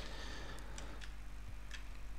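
Faint, irregular clicks of computer keyboard keys pressed to move the cursor down through code, about half a dozen in two seconds, over a low steady hum.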